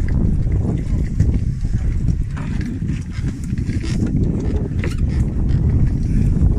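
Wind buffeting the phone's microphone on an open boat deck at sea, a steady low rumble with a few small clicks and knocks.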